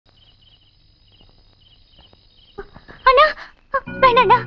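Crickets chirping faintly, a steady high trill with small repeated chirps over a low hum. About three seconds in, a woman's voice comes in loud with a wavering high vocal line.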